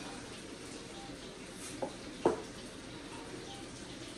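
Two sharp clicks, about half a second apart, as salt and pepper containers are handled over a blender jar, the second click the louder, over a faint steady hiss of room noise.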